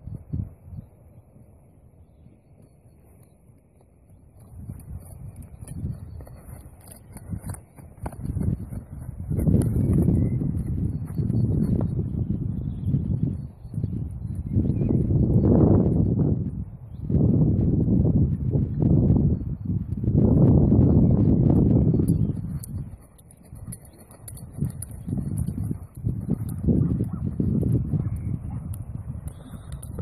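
Wind buffeting a phone microphone: a low, rumbling noise that comes and goes in gusts lasting a few seconds each, heaviest through the middle stretch, after a quieter few seconds at the start.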